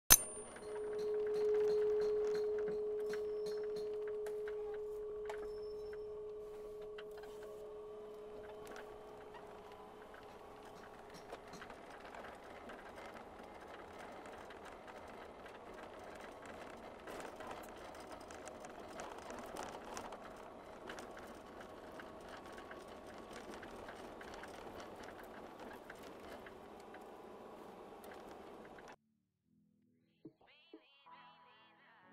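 A logo sting: a single struck tone, bell-like, that rings and slowly fades away over about ten seconds. Faint background hiss with scattered small clicks follows, cutting to silence about a second before the end.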